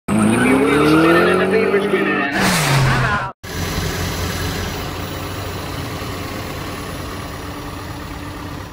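An engine revving, its pitch climbing for about two seconds, then a rush as it speeds past with the pitch dropping. After a sudden cut a bit over three seconds in, a steady, quieter background noise with a low hum runs on.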